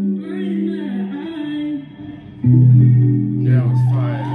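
Live street-busking music led by guitar, with long held notes; about two and a half seconds in, a louder, deeper sustained note comes in.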